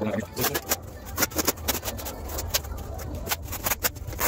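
Irregular sharp clicks and scrapes from a steel trowel working thinset onto a waterproofing membrane corner, over a low steady hum.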